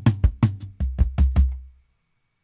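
Sampled acoustic drum kit in EZdrummer 3 playing a rolling tom fill: a quick run of tom strikes stepping down to the lower toms, ending about a second and a half in and ringing out to silence.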